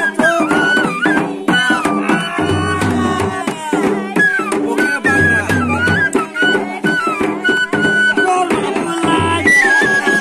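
Live folk music: a long bamboo flute plays a wavering melody over a laced barrel drum beaten in a repeating rhythm, with short sharp percussive strokes throughout.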